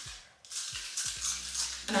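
La Roche-Posay thermal spring water aerosol misting onto the face: a soft spray hiss starting about half a second in.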